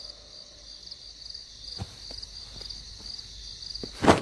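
Crickets chirping in a steady, evenly pulsing high trill, with a few faint soft knocks in the second half.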